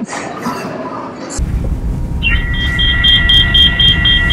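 Recorded electronic 'scanning' sound played from a phone's speaker, starting about two seconds in: a steady high whine with fast beeps over it, about four a second, meant to pass for a credit-card scanning device. It comes over a low rumble of store background noise.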